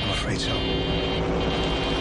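Horror film trailer sound design: a quick whoosh just after the start, then a held droning tone with a faint high ringing above it.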